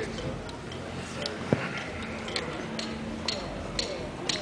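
Light, sharp clicks at a steady pace of about two a second: a drummer tapping out the song's tempo, over the murmur of voices in the room.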